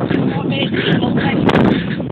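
Loud, distorted rumble of wind buffeting and handling noise on a phone microphone carried on the move, with a sharp knock about one and a half seconds in.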